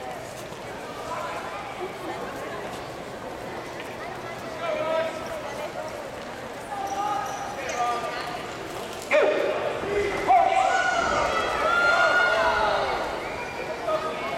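A man speaking into a microphone over a hall's public-address system, the voice echoing in the room. There is a sharp knock about nine seconds in, and the voice is louder after it.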